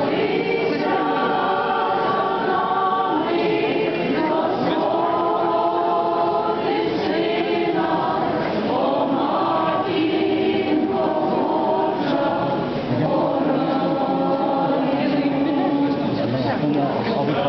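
A group of voices singing a church hymn together in long, held notes, with some talking mixed in.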